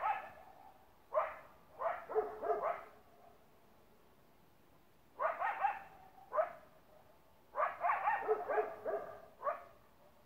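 Canine barking in short clusters of two to four barks, with gaps of about a second between clusters and a longer lull of about two seconds in the middle.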